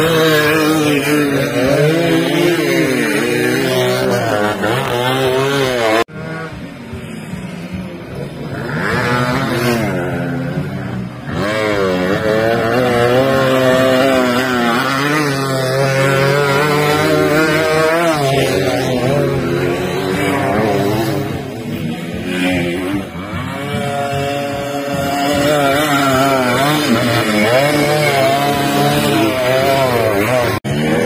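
Dirt-bike engines revving up and easing off again and again as the bikes ride the track. The sound falls suddenly to a quieter stretch about six seconds in and grows loud again around eleven seconds in.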